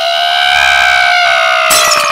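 A voice holding one high note, rising slightly in pitch and growing louder, broken off near the end by a burst of shattering glass.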